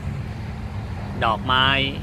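A man's voice speaking one short Thai word, ดอกไม้ ('flower'), a little over a second in, over a steady low rumble.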